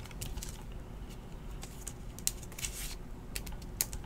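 Trading cards and clear plastic card sleeves being handled on a table: a scatter of faint clicks and light rustles.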